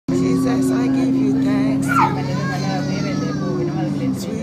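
A woman singing one long held note without accompaniment, gliding into the next note near the end. A short, high, falling squeal cuts in about halfway.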